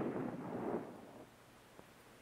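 M18A1 Claymore anti-personnel mine exploding. The blast rumbles and dies away over about a second.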